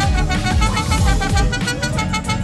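Mariachi band playing live: violins and trumpet over strummed guitars and a guitarrón, with a steady strummed rhythm.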